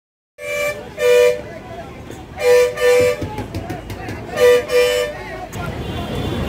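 A vehicle horn sounding three quick double toots, each a short steady blare, over busy street noise with voices.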